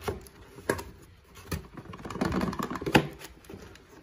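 Packaging being handled in a cardboard box: a plastic-wrapped box is rustled and knocked against cardboard and other boxes, giving a few sharp knocks, the sharpest about three seconds in.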